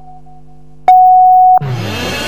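Electronic countdown beeps of a TV programme ident over a low steady synth drone: one long, high beep about a second in marks the end of the count. Near the end the news programme's theme music starts in with a sudden rush.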